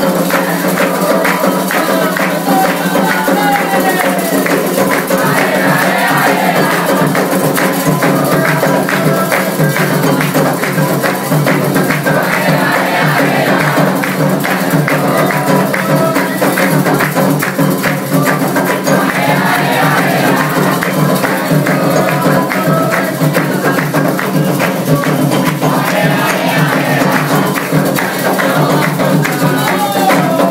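Candomblé ritual music: atabaque hand drums beating a fast, steady rhythm with a bell and shakers, handclaps from the circle, and a group of voices singing a chant that comes back every few seconds.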